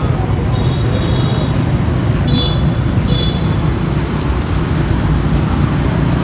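Steady low rumble of street traffic, with a few short high-pitched squeaks about a second in and again around two to three seconds in.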